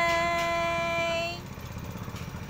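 A woman's voice holding one long drawn-out vowel, rising briefly and then steady in pitch, which stops about one and a half seconds in. A low steady rumble runs underneath.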